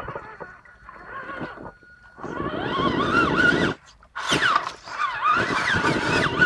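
Traxxas Summit RC truck's electric motor and geared drivetrain whining in bursts as it climbs wet rocks. The pitch rises and falls with the throttle, and the sound cuts out briefly about two seconds in and again about four seconds in.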